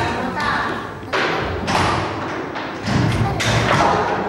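Voices talking, with several dull thumps and knocks among them.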